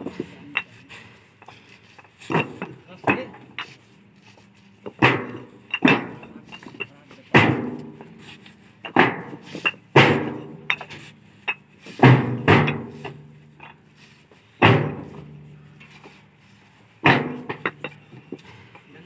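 Fly ash bricks knocking down one after another onto a stack, a sharp clink every one to two seconds, about a dozen in all, each with a short ring.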